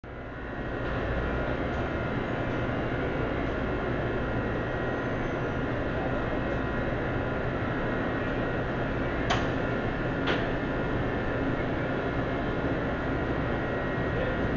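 Steady hum and hiss of a fast-food restaurant's ventilation and kitchen equipment, with two sharp clicks about nine and ten seconds in.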